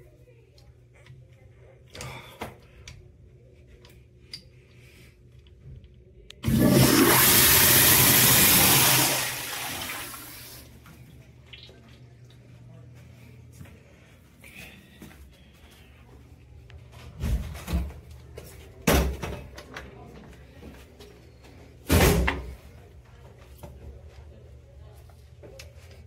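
Kohler commercial toilet flushing through its flush valve: a sudden loud rush of water lasting about three seconds, tapering into a quieter trickle. Several sharp knocks follow later.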